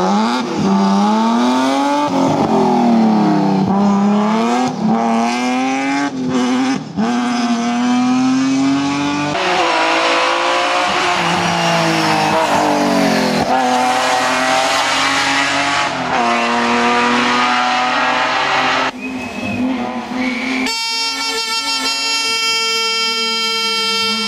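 A BMW M3 E36 race car's engine revving hard. It climbs in pitch through each gear and drops back at every shift or lift, over and over. Near the end a steady high-pitched tone with many overtones cuts in suddenly.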